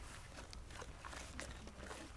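Faint background: a steady low hum with a few scattered soft clicks and rustles, the sharpest about half a second in and again near a second and a half in.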